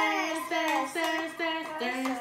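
A young girl singing a simple sing-song tune in short held notes that step up and down, a few notes a second.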